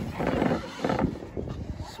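A young child's voice making wordless vocal noises.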